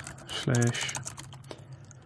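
Typing on a computer keyboard: a quick run of keystroke clicks that thins out in the second half.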